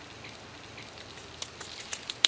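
Faint, steady outdoor background hiss, with a few light clicks near the end.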